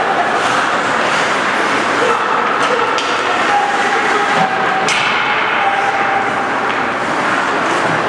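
Ice hockey play in a rink: sharp knocks of sticks and puck, the loudest about five seconds in, over a steady din of skates, crowd and voices shouting.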